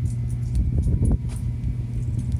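Steady low mechanical hum with rumble beneath it, joined by a few faint light clicks and taps.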